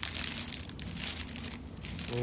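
Clear plastic bag crinkling and rustling irregularly as it is handled.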